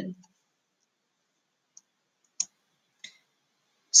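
Three short, faint clicks about two-thirds of a second apart, the middle one the loudest, in otherwise near silence: a computer mouse clicking to advance the slideshow.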